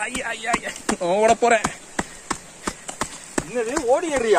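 Footsteps of several people climbing rough earthen steps on a trail, a quick run of sharp step sounds, with voices calling out between them.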